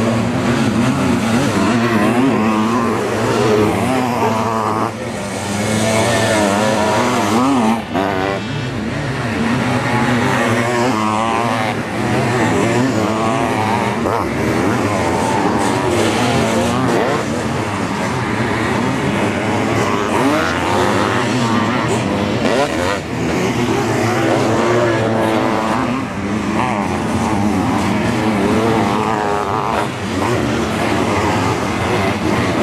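Several sidecar motocross outfits racing, their engines revving hard and dropping back as they accelerate, jump and corner, the pitch rising and falling continuously with overlapping engines.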